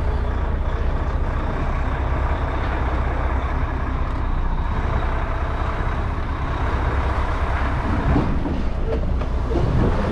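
Heavy goods vehicle's diesel engine running steadily at low speed while the lorry makes a tight turn, heard from inside the cab.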